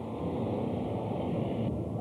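Steady rushing background noise with no speech; a higher hiss in it cuts off near the end.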